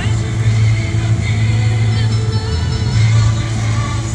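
Music playing, with long held bass notes.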